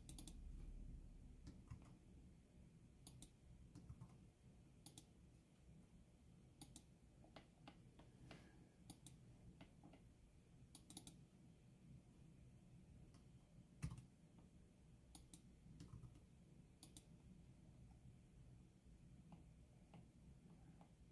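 Faint, irregular clicks of a computer mouse and keyboard, one click louder about 14 seconds in.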